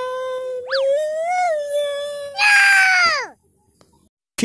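A man's exaggerated, howl-like wailing note, held long and level with a slight lift partway, then a louder wail that falls steeply in pitch and cuts off suddenly. A short sliding boing-type sound effect rises and falls early on.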